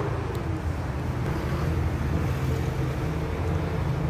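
Car engine and road noise, a steady low rumble.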